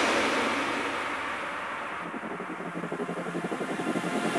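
Electronic dance music from a DJ set in a breakdown: the full beat and deep bass drop out, leaving a thinner, quieter texture whose highs fade away by about halfway through. A rapid pulsing then swells back up toward the end, building toward the next drop.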